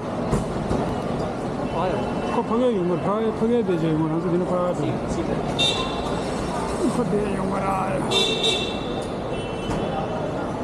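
Busy traffic-and-crowd noise under a concrete canopy: a voice talking nearby over a steady rumble of vehicles, with two short high horn toots about six and eight seconds in.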